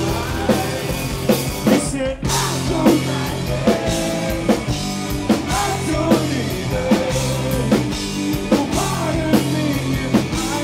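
Live rock band playing: drum kit keeping a steady beat under electric guitars and bass, with a singer's voice. The whole band stops for a split second about two seconds in, then comes back in.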